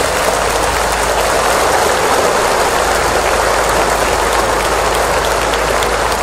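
Loud, steady rushing noise with a low hum underneath, even throughout, with no pitch or rhythm.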